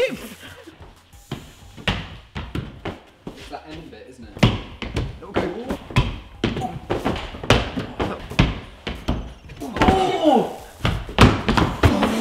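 A run of thuds and slaps as climbers jump at a crack feature on a bouldering wall, dynoing into a chicken-wing arm jam, and land on the padded floor. Voices and laughter come in about ten seconds in.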